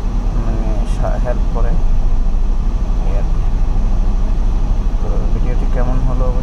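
Steady low rumble of an idling vehicle engine, with faint voices talking now and then.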